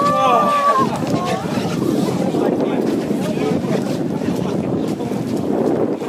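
Wind buffeting the microphone in a steady rough rumble, with a person's voice calling out in the first second.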